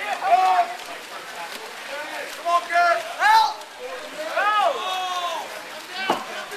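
Spectators and players shouting and calling out in raised, high-pitched voices during a water polo game, several loud yells over a steady haze of crowd and pool noise.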